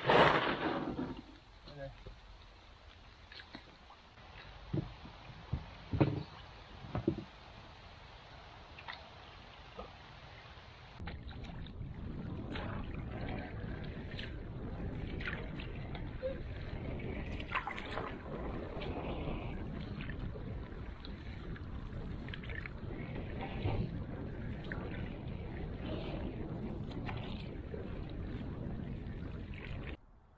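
Knocks and scrapes of gear being loaded into a canoe, after a brief loud rush at the start. About eleven seconds in, this gives way to the steady wash of water and wind around a moving canoe, with the splash of repeated paddle strokes.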